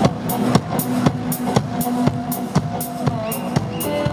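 A live band playing an instrumental intro: a drum kit keeps a steady beat under electric guitar and keyboard.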